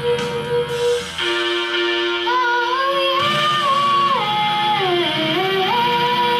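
A girl singing into a microphone over a recorded backing track of held chords; from about two seconds in her voice carries a melodic line that rises, holds, and then falls near the end.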